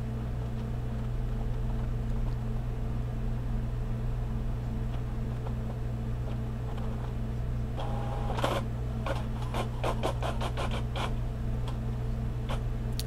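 HP OfficeJet Pro inkjet printer running a printhead cleaning cycle to clear clogged colour nozzles: a steady low hum, then about eight seconds in a brief motor whine followed by a quick run of clicks as the print carriage starts moving.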